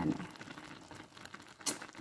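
A woman says one word, then a pause with only faint background noise and a few light clicks, and a short hiss near the end.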